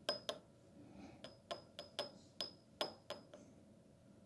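A small glass jar clinking: about ten light, sharp taps at an uneven pace, each with a brief high ring of the glass.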